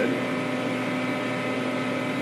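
Steady background hum with a few constant tones, the room noise under the interview recording, holding unchanged through the pause.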